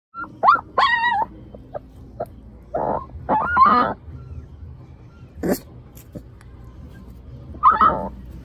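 A puppy crying in a series of short, high whines and yelps, about six cries spread a second or two apart.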